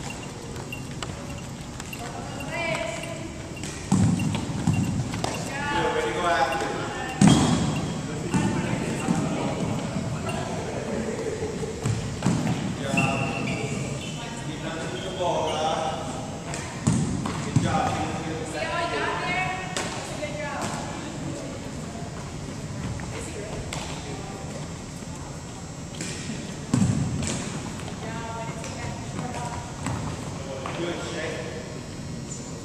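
Indistinct voices echoing in a large hall, with about six sharp thuds of thrown softballs scattered through.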